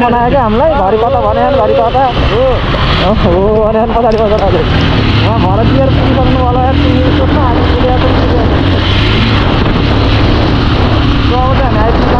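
Motorcycle engine running at a steady cruising speed, with wind rumble on the microphone. A voice sings over it, wavering in pitch, for the first four seconds, briefly again about six seconds in, and near the end.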